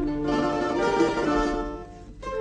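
Rondalla of bandurrias, lutes and guitars playing a traditional Catalan melody together. The music dips in loudness near the end.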